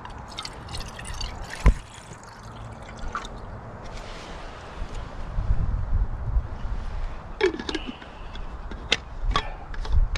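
Hot brew poured from a small steel container into a metal camping mug, with one sharp metal clink a little under two seconds in and a few lighter clinks near the end.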